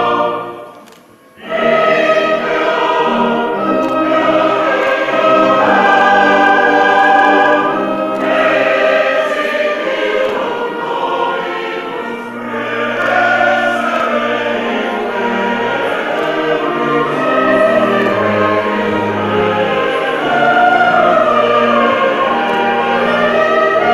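Church choir singing a sustained liturgical chant or hymn. The singing dips and breaks off for a moment about a second in, then resumes and carries on.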